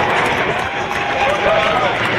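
Jet aircraft in formation flight overhead, a loud steady roar with slow, smooth glides in engine pitch as they pass, mixed with indistinct voices of spectators.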